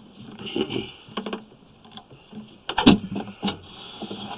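Sewer inspection camera's push cable being pulled back through the drain line, rattling and clicking irregularly over a steady hiss, with one loud sharp knock about three seconds in.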